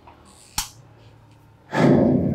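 A single sharp click about half a second in, then near the end a loud breath into a close microphone.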